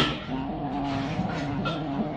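A domestic cat growling, a long steady low yowl held for over a second as it eats with a paw pressed on a turtle's head: a warning to keep the turtle off its food. A sharp click sounds right at the start.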